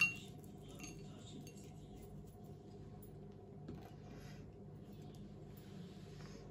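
Chopped walnut pieces dropped by hand onto a ceramic plate: a sharp clink at the start, then faint scattered ticks over a low steady hum.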